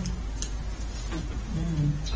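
A steady low electrical hum, with a faint voice murmuring near the end.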